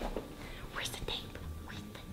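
Quiet whispering, with faint hissy sounds about a second in.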